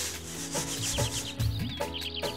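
Wheat grain rasping in a woven winnowing basket as it is shaken and tossed, in regular strokes about twice a second, with small birds chirping.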